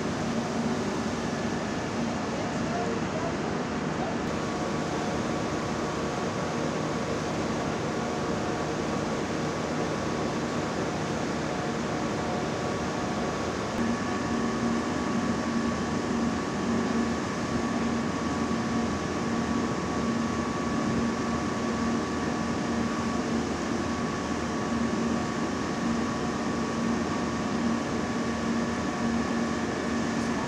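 Portable smoke-ventilation fan running steadily at the front door, a constant drone with a hum that grows a little stronger about halfway through.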